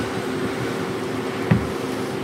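Steady low room hum in a lecture hall's background, with one brief soft knock about one and a half seconds in.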